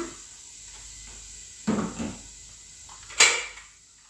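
Boiling water trickling into a stainless steel stockpot, then a short knock and, a little after three seconds in, a sharp, loud clank of kitchenware being handled.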